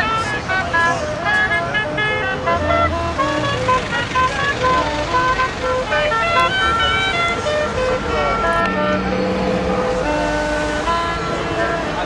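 A dense jumble of short tooting notes at many different pitches over voices, with a lower held toot about nine seconds in.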